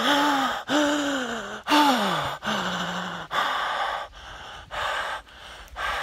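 A man's wordless vocalising: about four drawn-out cries in the first three seconds, most sliding down in pitch, then gasping breaths for the rest.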